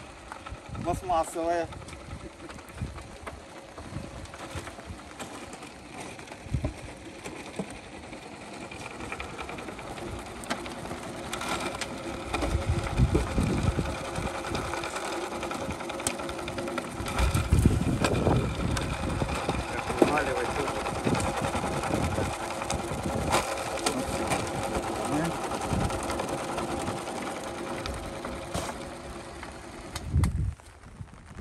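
Homemade steel soil sieve being shaken, its wire mesh screen rattling steadily as soil is sifted through it and clods are left on top, with louder stretches around the middle.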